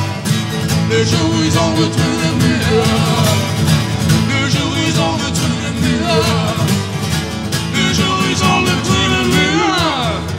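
Live folk song played on strummed acoustic guitars, with a short laugh and a shout of 'hey' about a second in. Near the end a long note slides down in pitch and the music begins to fade.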